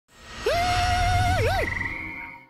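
A long, high held yell that breaks into a dip and a swoop near the end, followed by a thinner wavering high tone, over a low rumble: the opening title sting of the show.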